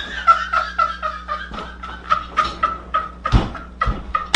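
A man laughing hysterically in a rapid run of short, high-pitched squealing breaths, several a second, over a steady low hum. Two louder thumps come near the end.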